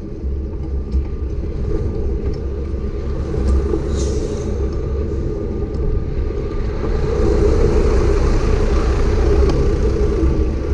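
Wind buffeting the microphone of a bicycle-mounted camera, with steady tyre rumble on asphalt. The noise grows louder and brighter about seven seconds in.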